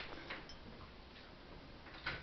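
Faint, irregular ticking from a homemade spark gap fed by a 10 kV step-up transformer, firing as it powers a bulb.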